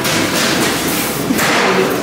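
A pink cardboard cookie box being handled and pressed shut: muffled thumps and rustling, strongest at the start and again about a second and a half in.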